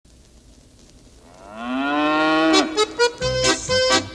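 One long cow moo, rising in pitch, starting about a second in; about two and a half seconds in, band music with a steady beat comes in over it, opening a song about a cow.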